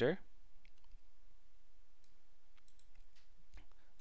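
A few faint, scattered clicks over a steady low room hiss.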